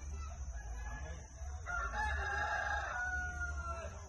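A rooster crowing once, starting a little under two seconds in and ending in a drawn-out, slightly falling note that stops near the end.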